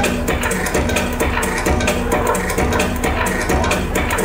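Techno DJ set played loud through a club sound system and picked up by a camcorder microphone: a steady, evenly repeating beat under a looping low note pattern, with no break.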